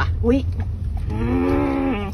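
A short exclamation, then a person's drawn-out vocal sound held on one steady pitch for about a second in the second half. A low in-car road rumble runs underneath.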